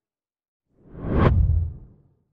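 A whoosh transition sound effect that swells in out of silence about a second in. It rises to a sharp high peak and falls away over a low rumble, fading out within about a second.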